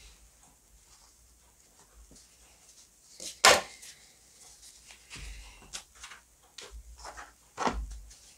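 Off-camera handling sounds at a worktable: a single sharp knock about three and a half seconds in, then light taps and rustling, and another knock near the end.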